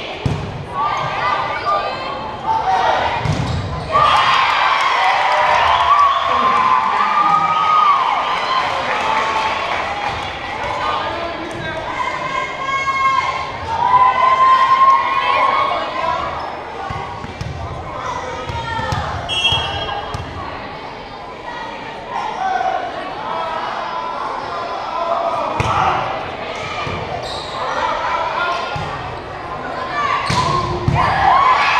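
Sound of an indoor volleyball match echoing in a gym: a ball bouncing and being hit on the hardwood court, with a few sharp knocks among the voices of players and spectators.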